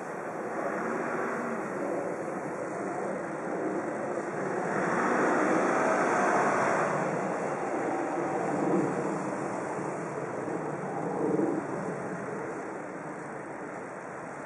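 Outdoor town ambience: a steady hum of distant road traffic, with a vehicle passing, swelling and fading again about five to seven seconds in.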